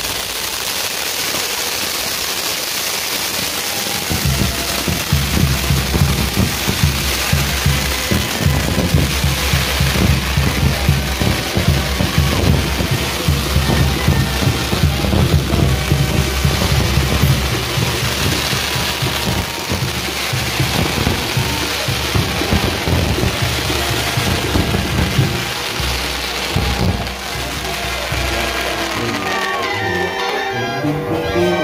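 A castillo fireworks tower burning, its spark fountains and pinwheels hissing and crackling steadily, with music playing alongside.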